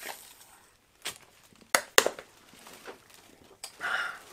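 A man drinking from a plastic sports-cap bottle: gulps and swallows with a few sharp clicks, the loudest two close together about two seconds in.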